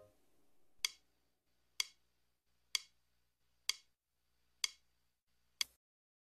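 Six sharp clicks, about one a second, keep a slow, even beat over near silence, like a metronome or click track.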